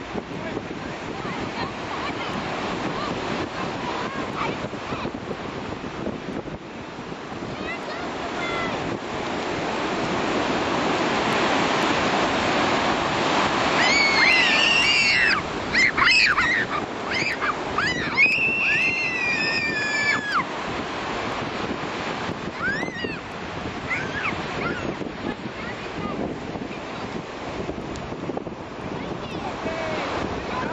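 Ocean surf washing up onto a beach, swelling to its loudest about halfway through, with wind on the microphone. From about halfway through, children squeal and shriek in high voices for several seconds as the water reaches them, with a couple more squeals later on.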